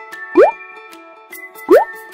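Light background music with a cartoon 'bloop' sound effect, a short, loud pitch that slides upward, heard twice about a second and a half apart.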